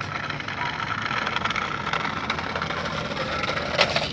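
Small battery-powered toy truck driving over rough pavement: its little electric motor whines steadily under the noise of its plastic wheels rolling, with one sharp knock near the end.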